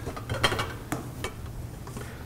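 Metal spatula and cookware clinking and knocking against pans and a pot: a handful of light, separate knocks in the first second and a half.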